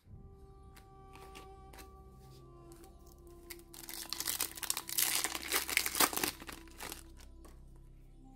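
Foil Yu-Gi-Oh! booster pack being torn open and crinkled, a loud burst lasting about three seconds from midway, over soft background music.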